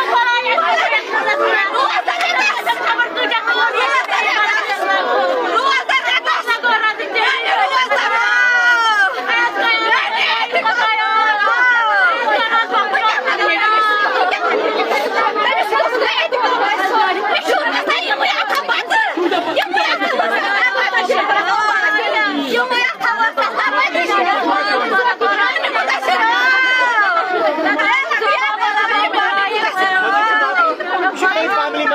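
Many voices talking and calling over one another at once in a packed room, a continuous din of overlapping chatter with no pause.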